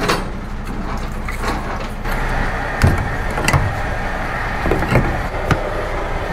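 Semi-truck diesel engine idling steadily, with about five sharp metal clanks and knocks as the trailer coupling gear is handled during uncoupling.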